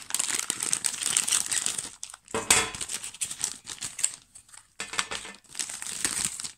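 Plastic candy-kit packaging crinkling in irregular bursts as it is handled and its contents pulled out, with the loudest rustle about two and a half seconds in.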